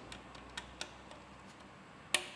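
A few faint small clicks from a plastic clip being worked into the access hatch of a car's plastic engine under-tray.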